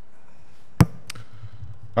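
A single sharp knock, then a fainter click about a third of a second later, over a low steady room hum.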